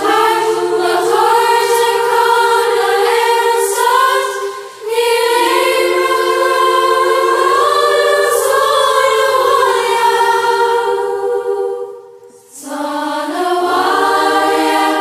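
Music: a choir singing slow, held phrases over a low sustained accompaniment, with brief breaks between phrases about five seconds in and near twelve seconds.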